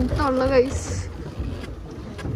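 A woman's short voiced exclamation, then wind rumbling on the microphone aboard a small open boat on the water.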